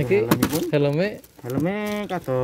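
A man's voice speaking in short phrases, then drawing out one long vowel at a steady pitch in the second half.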